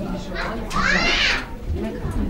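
People's voices in the background, with a child's high-pitched squeal near the middle that rises and then falls in under a second.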